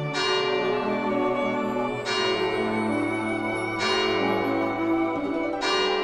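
Church bells ringing, four strikes about two seconds apart, each ringing on under the next.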